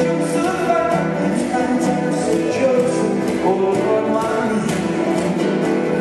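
Live acoustic band playing: acoustic guitar, flute, violin and upright bass together in a steady passage, with light percussion.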